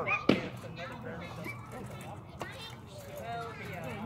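Rattan practice sword striking a shield: one sharp knock just after the start and a fainter one about two and a half seconds in, with people talking in the background.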